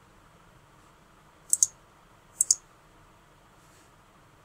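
Two computer mouse clicks about a second apart, each a sharp pair of clicks from the button being pressed and released.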